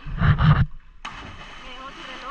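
A person jumping from a rock ledge into a deep pool of water and splashing in. It opens with a loud rush of noise lasting about half a second, then, after a short break, a steady wash of water noise.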